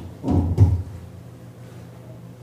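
Two dull knocks in quick succession, in the first second, typical of a handheld microphone being bumped and handled; a low steady hum follows.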